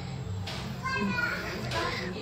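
Faint background voices and chatter over a steady low hum, in a gap in the close-up narration.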